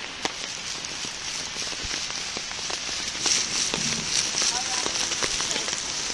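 Heavy tropical rain falling, a steady hiss of downpour scattered with sharp drop ticks. Faint voices come through briefly about four to five seconds in.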